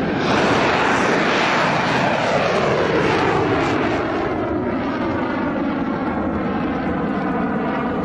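Babur cruise missile in flight just after launch: a loud rushing engine noise whose pitch falls over the first few seconds as the missile moves away, settling into a steady drone.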